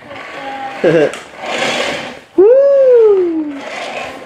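A young child's voice: a short laugh about a second in, then a loud, drawn-out squeal that rises and then slowly falls in pitch.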